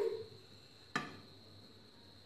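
A single sharp metal clink about a second in, with a brief ring, as a metal plate of dhokla batter is set down inside a metal wok of hot water for steaming.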